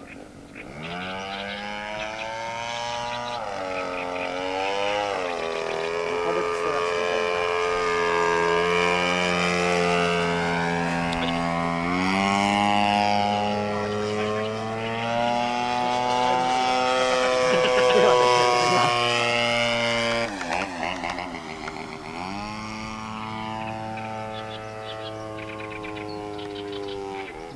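Gasoline engine of a radio-controlled model airplane in flight, running at high revs with its propeller buzz. It gets loud about a second in, and its pitch sweeps down and back up several times as the plane passes and changes throttle. It is loudest near the end of the second third.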